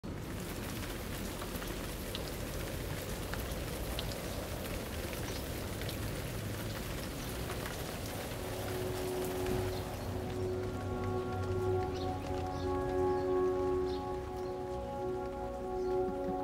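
Steady patter of rain with scattered individual drops, thinning out after about ten seconds as soft, sustained musical notes fade in beneath it.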